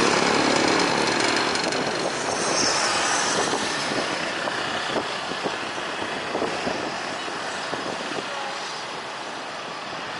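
A departing twin-engine jet airliner's engine noise, a broad rumble that fades steadily as the aircraft climbs away. Light scattered clicks and road traffic sit under it in the second half.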